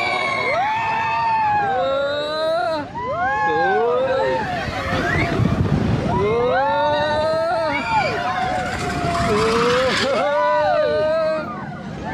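Riders on the Seven Dwarfs Mine Train roller coaster screaming and whooping in long rising-and-falling cries, several voices overlapping. Under them runs the rumble of the mine car on the track, swelling about halfway through.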